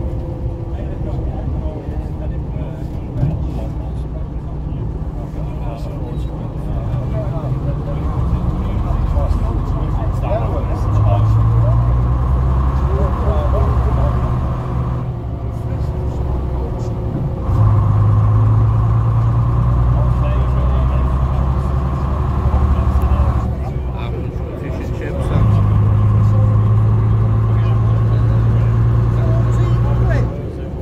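Bristol RELH coach's rear-mounted diesel engine heard from inside the saloon. It pulls away with its note climbing, then drives on under load. Twice the note eases off for a couple of seconds, as at gear changes.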